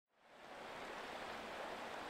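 A shallow, rocky stream rushing steadily over stones, fading in from silence in the first half-second.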